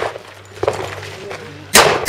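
A single handgun shot near the end, sharp and followed by a short echo, with the echo of the shots just before dying away at the start.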